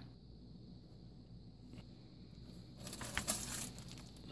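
Thin plastic jug being handled close by, crinkling and rustling briefly about three seconds in, over faint room tone.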